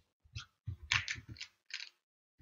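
Small plastic dropper bottle being handled over a glass of melted soap base: a few short, quiet clicks and rattles, in brief bursts about half a second in, around one second, and near the end.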